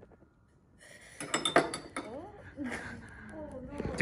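Glassware clinking and knocking as a glass flask is set over the mouth of a test tube held in a clamp on a metal stand. A short cluster of sharp clinks comes about a second in, with faint voices and handling noise after it.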